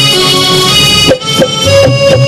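Live Indian instrumental band music: a keyboard with an accordion-like tone holds the melody over acoustic guitar and dholak strokes. The sound thins briefly just after a second in, then the full band comes back.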